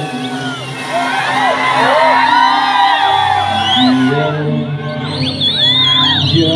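A man singing a song into a microphone, holding steady notes, while a crowd whoops and cheers over him. A wavering high call rises above the crowd near the end.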